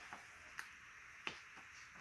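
Near silence broken by three faint clicks, the last the loudest, as printed sheets in plastic sheet protectors are handled.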